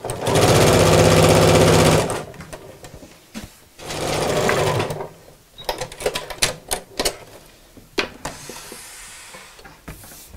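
Electric domestic sewing machine stitching bias binding onto a quilted mat: a steady fast run of about two seconds, then a second shorter run about four seconds in. Scattered clicks and rustles follow.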